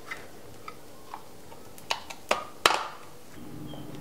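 Light metallic clicks and taps from a tin can being handled over a bowl: a few faint ones, then three sharper ones about two to three seconds in, the last the loudest with a short ring.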